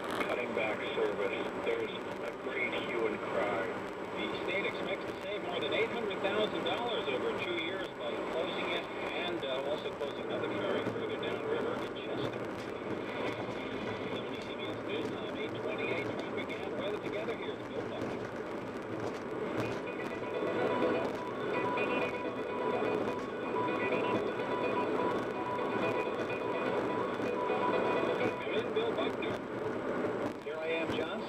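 Car radio playing music with voices over it, heard inside a moving car.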